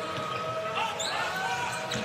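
Court sound of a basketball game in play: the ball being dribbled on the hardwood floor and short sneaker squeaks about a second in, over a steady crowd background.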